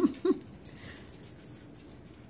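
Chihuahua puppies play-fighting over slippers give two short yips, one right at the start and one about a third of a second later.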